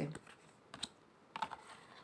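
A few faint light taps and clicks as a large round tarot card is set down on a glossy wooden tabletop and handled: one short tap just under a second in, then a few more about a second and a half in.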